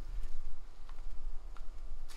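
Low, uneven rumble of wind on the microphone of a handheld camera outdoors, with a faint tick or two.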